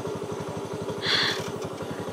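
A small engine idling steadily with a fast, even pulse, with a brief high-pitched hiss about a second in.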